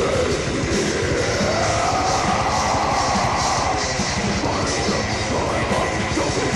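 Death metal band recording from a 1996 cassette: distorted guitars over fast, relentless drumming, with a long sliding pitch line in the middle of the mix.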